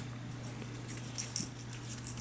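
Quiet handling noise from a cavapoo puppy being held and petted on a tile floor, with a few faint clicks and rustles about a second in, over a steady low hum.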